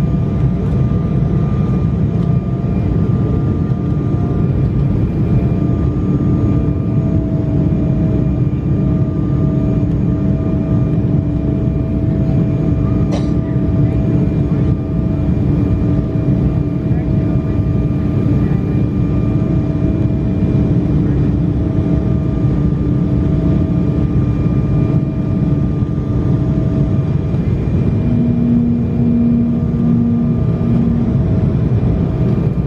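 Cabin noise inside an Embraer ERJ-195 airliner on approach: the steady noise of its turbofan engines and the airflow, with a few steady humming tones on top. Near the end one hum gives way to a lower, pulsing tone, and there is a single click around the middle.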